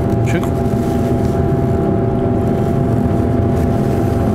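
Steady drone of a kitchen extractor hood fan running, with a constant low hum.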